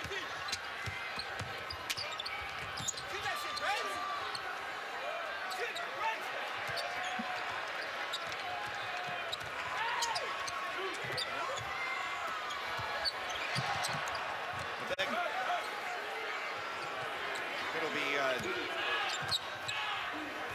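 A basketball being dribbled on a hardwood court, with repeated sharp bounces and short sneaker squeaks, over steady arena crowd chatter.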